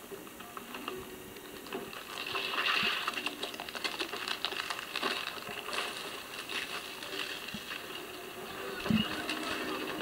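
Sea ice cracking and splitting as a film sound effect: a dense run of crackles and snaps that builds about two seconds in and carries on, with a single low thud near the end.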